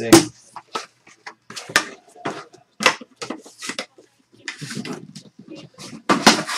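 Trading cards being handled: an irregular string of short clicks, snaps and rustles as cards are pulled and flipped through, with the sharpest snap just after the start.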